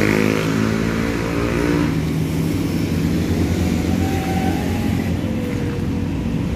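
Road traffic: a motor vehicle's engine running close by for about the first two seconds, then giving way to a steady traffic hum.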